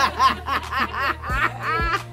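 A person laughing in a quick run of repeated ha-ha syllables over background music with a steady low beat.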